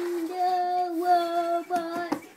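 A young child singing, holding one long high note that steps up slightly about a second in, then a short note near the end.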